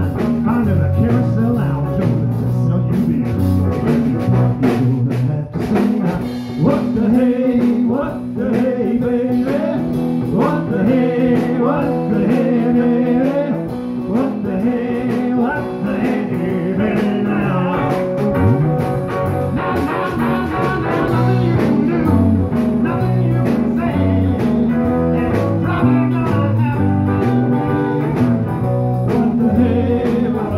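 Live blues band playing: electric guitars, including a hollow-body archtop, over a Yamaha drum kit, with a male singer's vocals through a PA, loudest between about 6 and 14 seconds.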